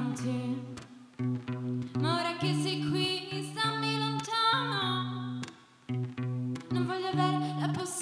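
A woman singing live to her own acoustic guitar accompaniment, with a short break in the sound about two-thirds of the way through.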